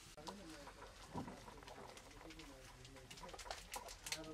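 Faint pigeon cooing, low and wavering, with light crackling clicks that grow denser over the last second.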